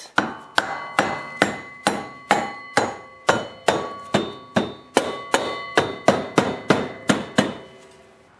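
A rubber mallet strikes an ATV front wheel hub about eighteen times in a steady rhythm, roughly two and a half blows a second, each blow leaving a brief ring. The blows drive the hub onto the axle shaft through the new wheel bearings.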